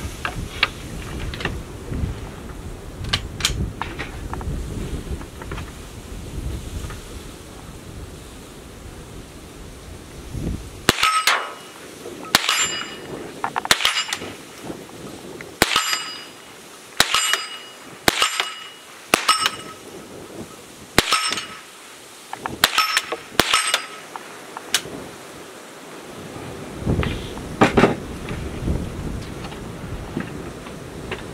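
Stevens .22 rifle fired ten times at a steady pace over about thirteen seconds, each shot followed by the ringing clang of the bullet striking a hanging steel target.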